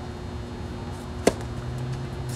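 Tennis racket striking the ball on a flat serve: one sharp pop about a second and a quarter in, over a steady low hum.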